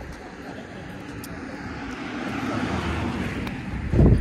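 Noise of a passing vehicle, building gradually over the second half and peaking shortly before the end.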